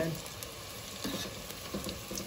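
Gram-flour-battered potato patties deep-frying in hot oil in a stainless steel pot on medium heat: a steady sizzle, with a few light ticks.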